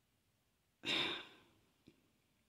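A woman sighs once, a breathy exhale of about half a second starting about a second in, followed by a faint mouth click near the end.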